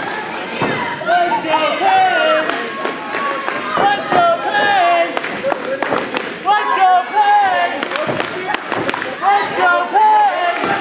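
Raised voices shouting and calling out, sometimes several at once, with a few sharp thumps among them.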